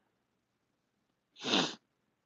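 A single sneeze from a masked man, about one and a half seconds in.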